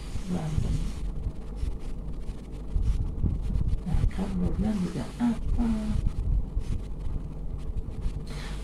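A woman's voice murmuring softly with a few short wordless sounds, over a steady low background rumble.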